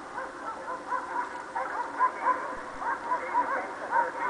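Many short yelping calls, each rising and falling in pitch, overlapping at several a second over a steady hiss.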